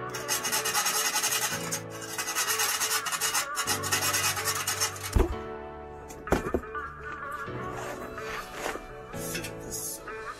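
Hand file rasping back and forth over the freshly cut edge of a metal exhaust pipe, deburring it, over background music. The filing stops about five seconds in, and two sharp knocks follow.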